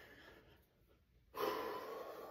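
A man out of breath right after a push-up set taken to failure: soft breathing, then a loud, breathy exhale about one and a half seconds in.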